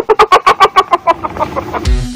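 A rapid cartoon cackle of about a dozen high clucking notes, about ten a second, that fades away over a second and a half.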